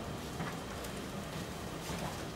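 Steady low background hiss of room tone, with a few faint ticks.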